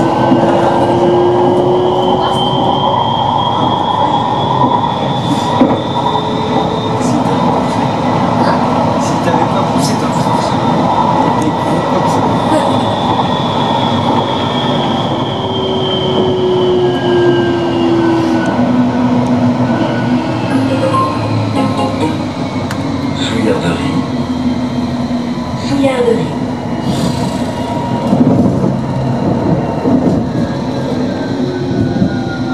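Modern electric tram running fast on rails: steady rolling and running noise with the whine of its electric traction drive, the pitch climbing over the first several seconds as it speeds up and falling away in the second half as it slows. Near the end, sharp clicks and clatter as the wheels run over points and rail joints.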